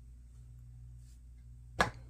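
Low steady room hum with little else, then a single sharp click near the end.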